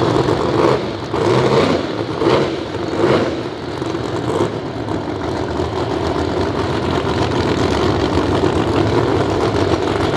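Drag race car engines running loud at the start line, with about five quick surges in the first few seconds, typical of throttle blips, then settling into a steady rumble.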